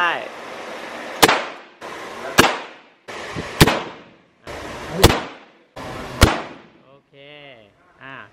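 Revolver firing five shots about a second and a bit apart, each sharp crack trailing off briefly.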